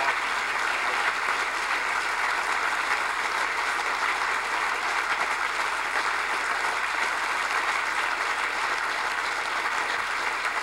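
Audience giving a standing ovation: sustained, steady applause from a large crowd in a hall.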